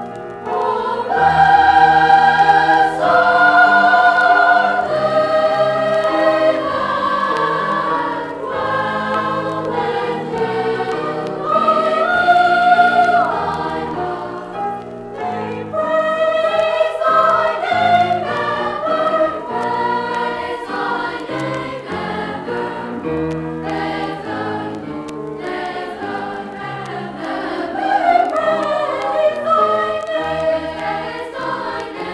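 A school glee club singing a choral piece, played from a vintage vinyl LP. The voices sing held chords in phrases of a few seconds, with a short breath about halfway through.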